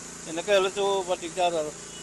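A man's voice speaking Assamese for about a second and a half, over a steady high-pitched hiss.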